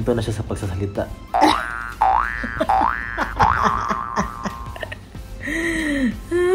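Cartoon boing sound effect over background music: a springy rising glide repeated several times in quick succession from about a second and a half in, then a short falling tone near the end.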